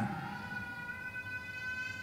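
A faint, steady ringing tone with several overtones, holding one pitch throughout.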